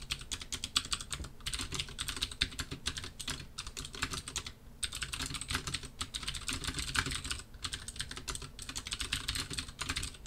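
Typing on a computer keyboard: a fast, steady run of key clicks with a couple of brief pauses.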